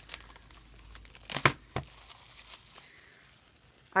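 Crinkling as K-pop album packages are handled, with a couple of sharp clicks about a second and a half in.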